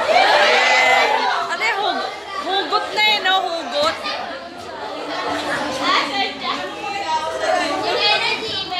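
A group of students and teachers talking over one another, loudest in the first second or so.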